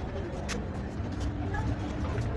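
A steady low rumble with faint, indistinct voices in the background and a sharp click about half a second in.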